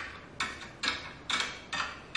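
Eggs set one at a time into a clear plastic egg organizer bin, four light clicks about half a second apart.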